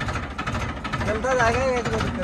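Farm tractor's engine running steadily with a low, even beat as the tractor is driven, with a man's voice briefly over it in the second half.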